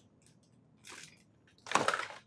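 Hands rummaging among items on a desk: a faint brief rustle about a second in, then a louder clatter and scrape near the end.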